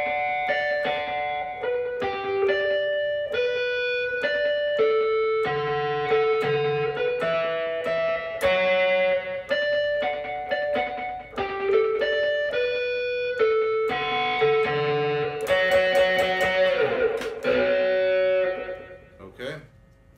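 Electric guitar (a Stratocaster on its neck pickup) playing a clean single-note melody of fretted notes, one note about every half second. Near the end a fuller strummed passage comes in, its pitch dipping and coming back up, before it rings out.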